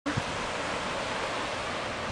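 Steady, even rushing noise of the open air on a sandy beach, wind and surf together, with a brief bump at the very start.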